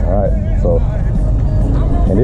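Pontoon boat under way in wind: a steady low rumble from the running motor and wind buffeting the microphone, with brief voice-like fragments over it.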